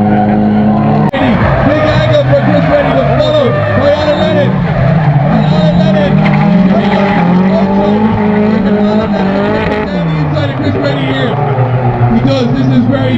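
Two drift cars' engines revving up and down hard in tandem, with tyres skidding and squealing as they slide sideways through the corners. There is a brief abrupt break in the sound about a second in.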